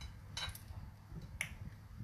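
Faint mouth noises from a woman pausing between sentences: a short breath about half a second in and a brief sharp click about a second and a half in, over a faint low hum.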